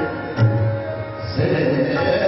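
Sikh kirtan music: harmonium playing sustained notes with tabla accompaniment. A deep bass-drum stroke from the tabla comes about half a second in, and the music grows fuller near the end.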